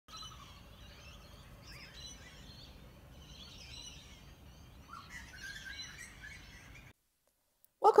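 Faint outdoor ambience: birds chirping over a low steady rumble. It cuts off abruptly to silence about seven seconds in, and a woman's voice begins just before the end.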